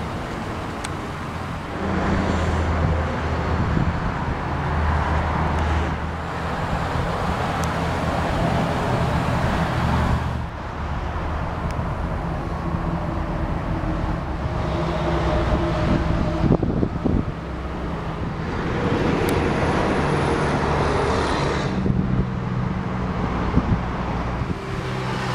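Steady low hum of a 2008 Chevrolet Silverado's Vortec 5.3-litre V8 idling, under a haze of outdoor traffic and wind noise that rises and falls in stretches.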